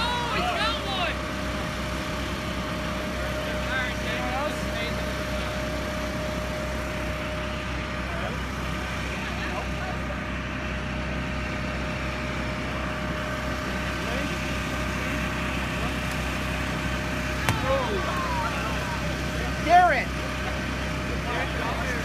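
Steady drone of the electric blower that keeps an inflatable arena pumped up, with a constant whine. Bursts of voices and laughter about a second in, around four seconds in and near the end, and a single sharp knock near the end.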